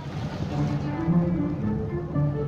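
Background music with slow, held low notes.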